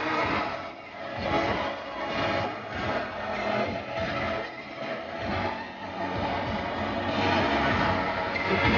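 A moving car's road and engine noise, swelling and dipping, with a guitar rock song continuing more quietly beneath it.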